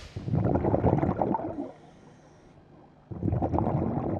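Underwater bubbling and gurgling of a scuba diver's exhaled breath venting from the regulator, in two bursts with a quieter pause of about a second and a half between them.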